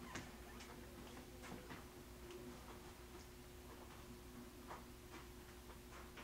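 Faint, irregularly spaced small clicks and ticks over a steady low electrical hum.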